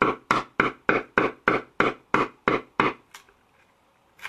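A hammer taps a wood chisel in a steady run of about three blows a second, chipping a neck pocket out of a poplar bass body. The blows stop about three-quarters of the way through.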